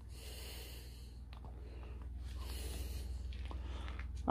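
Faint breathing close to the microphone, two slow breaths, with a few soft clicks and a steady low hum underneath.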